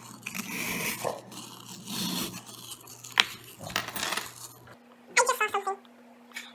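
A screwdriver scraping and chipping at a plaster dig block, with a single sharp click about three seconds in.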